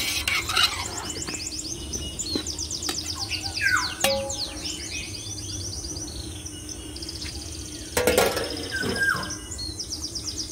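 Songbirds chirping in rapid repeated trills. A few sharp metallic knocks, like a pot or its lid being handled, come at the start and again about eight seconds in.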